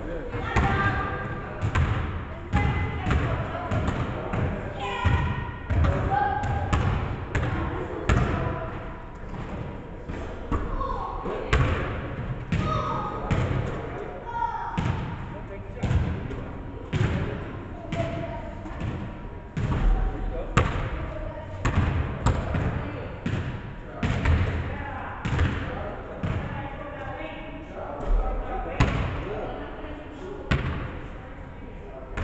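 Basketball bouncing repeatedly on a hardwood gym floor: irregular dribbling thuds, about two or three a second, echoing in the large hall.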